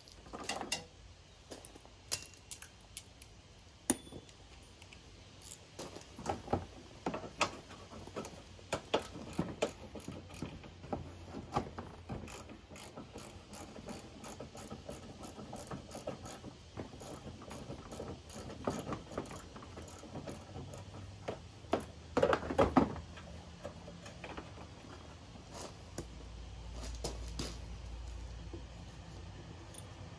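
Hand ratchet clicking in irregular runs as it backs out a 10 mm bolt on a headlight mounting bracket, with a denser, louder run of clicks a little past the two-thirds mark.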